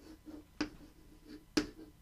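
Chalk tapping against a blackboard while writing: two sharp taps about a second apart, with a faint scratch of chalk between them.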